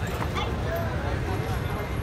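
Crowd of onlookers chattering and calling out over a steady low rumble, with one short raised voice near the middle.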